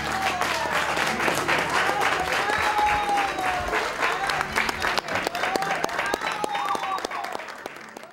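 Audience applause right after the last note of a rondalla song: dense hand clapping with a few voices calling out over it, fading away near the end.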